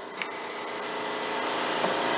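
Steady mechanical rubbing from a hex wrench turning the injection press's height-adjustment screw, slowly growing louder.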